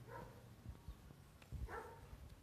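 A dog barking faintly: two short barks about a second and a half apart, with a few low thumps between them.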